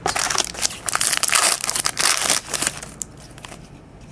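Crinkling of a foil trading-card pack wrapper as cards are handled, loudest for the first two and a half seconds, then softer.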